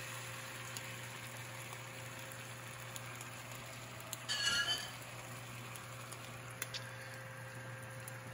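Beaten eggs and back bacon frying in oil in a hot nonstick pan, with a steady sizzle over the even hum of a kitchen range-hood fan. A brief high squeak about halfway through, and a few faint clicks.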